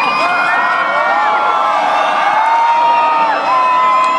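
Large crowd cheering and whooping, many voices holding long, overlapping shouts that rise and fall in pitch.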